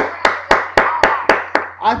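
Hands clapping in an even rhythm, about four claps a second, seven claps in all, stopping shortly before the end.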